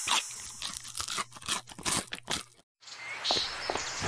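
Cartoon crunching and chewing sound effect as a character bites into a coin: a quick run of crunchy bites for about two and a half seconds that stops abruptly, followed by a few fainter clicks and a short high note.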